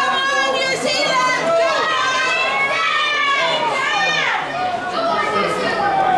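Several raised voices calling and shouting over one another without a break, none of them clear enough to make out as words.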